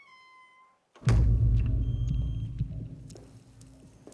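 A short, high squeak-like tone falling slightly in pitch, then about a second in a sudden loud, deep thud whose rumble dies away over a couple of seconds.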